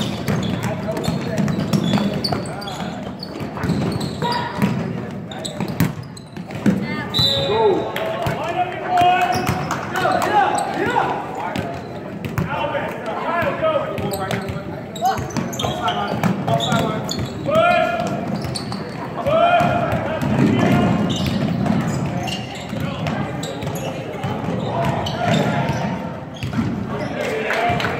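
Basketball bouncing on a hardwood gym floor during play, mixed with voices calling out, all echoing in a large gym.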